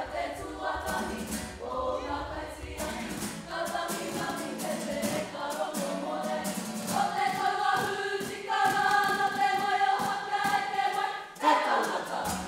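A kapa haka group singing a waiata poi together, with guitar accompaniment and the poi balls slapping in a steady rhythm. In the second half the voices hold long sustained notes.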